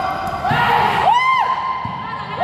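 People shouting on a basketball court: drawn-out yells that rise, hold and fall in pitch, coming in the middle of the moment over the general noise of the hall.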